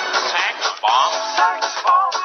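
Music with a vocal line over a dense accompaniment.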